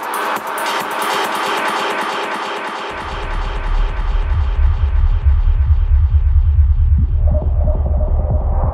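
Techno in a DJ mix. The bass is cut for the first three seconds, then the kick and bassline drop back in heavily. Meanwhile the treble is steadily filtered away, leaving the sound darker and duller, and midrange parts return near the end.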